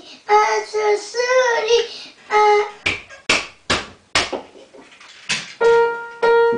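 A high child's voice vocalizing wordlessly with sliding pitch, then five sharp smacks spaced about half a second apart, then notes struck on an upright piano near the end.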